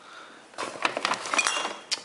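Empty glass beer bottles clinking against one another in a paper bag as one is pulled out: a quick, irregular run of clinks starting about half a second in.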